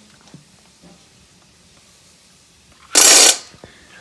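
A Great Dane shaking its head while drooling: one loud, half-second burst of rattling noise about three seconds in, otherwise near-quiet room background.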